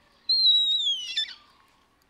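A single loud, high-pitched whistle-like squeal. It holds steady for about half a second, then slides sharply down in pitch and stops about a second and a half in.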